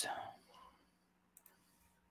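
The tail of a spoken word fades out in the first half second. Then two faint, sharp computer clicks come about a tenth of a second apart, about one and a half seconds in, as a word starts to be entered into a web page.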